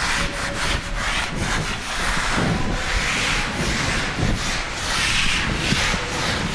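A series of dry rubbing strokes, about one a second, swelling and fading in level.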